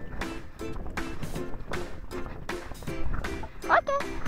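Background music with a steady beat and short repeated notes.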